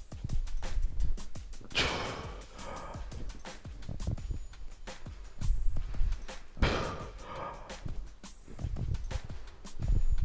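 A man's forceful breaths during barbell back squat reps: two loud breathy bursts, about two seconds in and again near seven seconds. The breath is held to brace through each squat and let go and retaken at the top of the rep.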